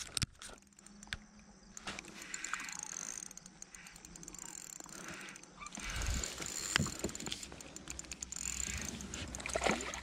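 Faint, scattered clicks and knocks of fishing tackle and a spinning reel being handled aboard a plastic kayak, with a sharp click right at the start, over a faint hiss and a low rumble in the second half.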